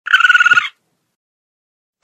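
A possum's call: one short, rapid chattering trill lasting well under a second.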